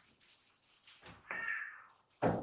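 A brief squeak about a second in, as a lidded plastic storage jar is set down and slides on a stone countertop.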